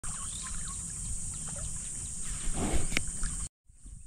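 Outdoor natural ambience: scattered short bird chirps over a steady high-pitched drone, with a brief rustle and a click near three seconds. The sound cuts out abruptly at about three and a half seconds.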